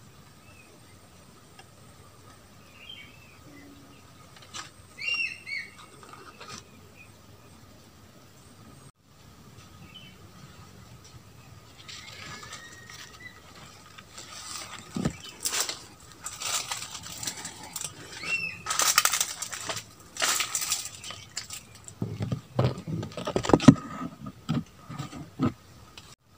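A few short bird chirps over a quiet background. From about halfway through, leaves rustle and brush against the microphone as the camera is moved through the foliage, with low handling thumps near the end.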